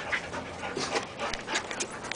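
A dog panting in short, quick breaths, a few to the second.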